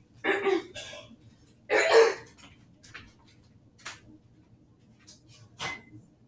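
A woman coughing twice, the second cough louder, as she is losing her voice; a few faint knocks follow.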